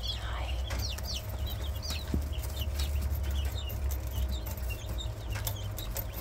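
Jumbo brown Coturnix quail calling, with many short, high chirps scattered throughout over a low rumble.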